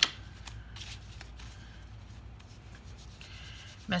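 An oracle card deck being shuffled by hand: soft rubbing and sliding of cards, opening with a sharp tap.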